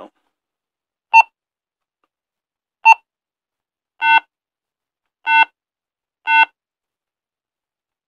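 Motorola PFD3000 brick phone beeping as its keypad buttons are pressed: five short electronic beeps at uneven intervals, the last three slightly longer than the first two.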